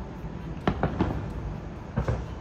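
Fireworks going off: three sharp bangs in quick succession about two-thirds of a second in, then another at the very end.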